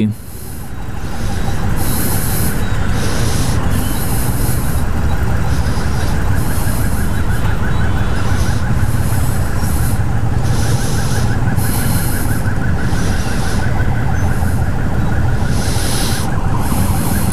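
Motorcycle engines idling in stopped traffic: a steady low rumble that swells up over the first second or two.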